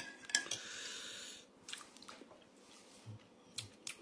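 A metal spoon stirring broth in a ceramic mug, clinking against it a few times, with a soft breathy sound for the first second and a half.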